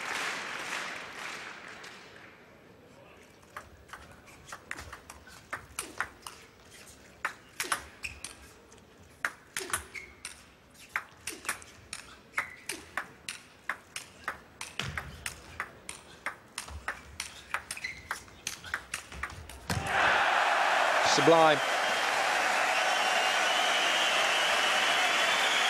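Table tennis rally: a long, quick run of sharp clicks of the celluloid ball off the bats and table, going on for about sixteen seconds. Then the hall crowd suddenly bursts into cheering and applause as the point ends.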